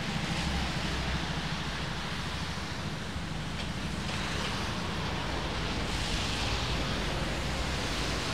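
Steady hiss of a rainy city street: traffic passing on the wet road, with rain falling.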